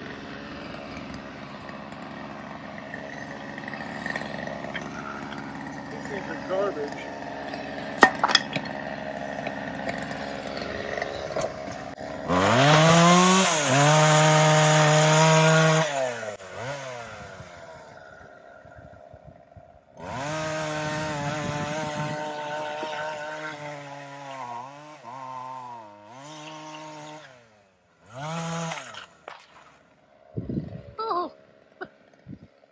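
Two-stroke chainsaw, at first running at a steady low speed with a sharp crack about eight seconds in. It is then revved to full throttle for a few seconds about twelve seconds in, the pitch falling back as it drops to idle. It is revved again for several seconds about twenty seconds in, then the speed wavers up and down, with a short blip near the end.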